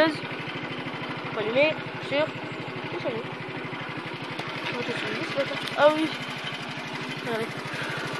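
Four-stroke IMF scooter engine idling with a steady, even low pulse.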